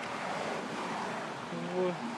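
A vehicle passing on the road, its tyre noise swelling gently and fading, with a brief voice near the end.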